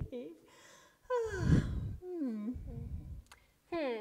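A woman's voice making wordless puppet-character sounds: about four drawn-out hums or sighs, each falling in pitch, with breathy sounds between them.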